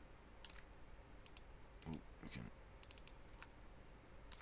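Faint, scattered clicks of a computer mouse and keyboard, about a dozen, some in quick pairs and short runs.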